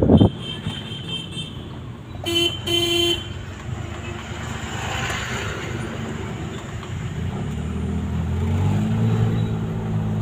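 Engine and road noise of a moving road vehicle heard from on board, with two short horn toots about two and a half to three seconds in. The engine hum grows louder near the end.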